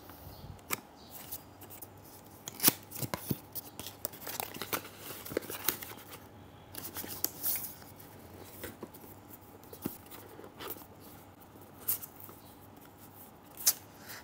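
Small cardboard product boxes being handled and opened: scattered light taps, clicks and short rustles of packaging and paper inserts, with a sharper click about three seconds in and another near the end.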